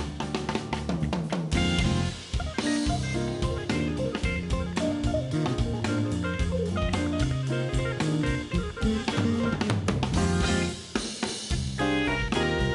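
Live jazz band playing, led by a drum kit with cymbals and snare and an electric guitar, with bass guitar and keyboards underneath.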